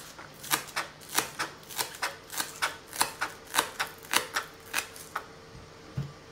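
Small kitchen knife chopping spring onions on a plastic cutting board: quick, even knocks, about three a second, that stop a little after five seconds in.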